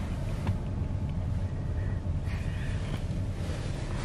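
Steady low rumble inside a car's cabin, with a few faint clicks.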